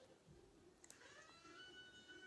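Near silence: faint room tone with one soft click a little before the middle.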